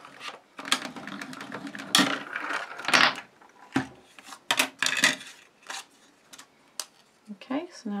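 A die-cutting machine pulling a sandwich of cutting plates, die and card through its rollers, a steady grinding run of about three seconds that cuts out a thin strip. It is followed by scattered clicks and clacks as the plastic cutting plates are handled and separated.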